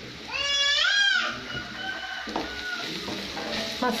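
Sliced onions and masala sizzling in a frying pan as a spatula stirs them. About half a second in, a loud, high, wavering cry lasting about a second rises and then falls over the frying, with fainter cries after it.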